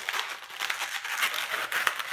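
Inflated latex twisting balloons, one red and one white, squeaking and rubbing against each other in quick, irregular crackles as a bubble is pushed through between them to lock the twists in place.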